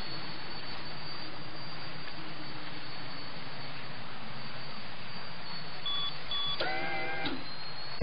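Steady low hiss, then two short electronic beeps about six seconds in, followed by a brief warbling electronic tone: a cartoon communicator signalling an incoming call.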